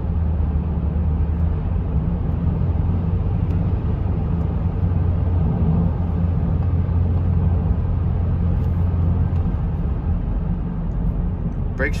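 Cabin noise of a 2011 Chevrolet Traverse cruising at about 60 mph: a steady low road and drivetrain rumble. The rumble eases about nine and a half seconds in as the SUV begins to slow.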